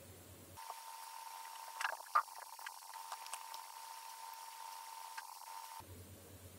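Faint sped-up background noise of the old laptop at work: a steady high whine over a thin hiss, with a few faint clicks. It starts about half a second in and cuts off abruptly just before the end.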